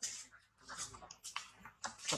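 Monkey making a few short, breathy whimpering sounds in quick succession.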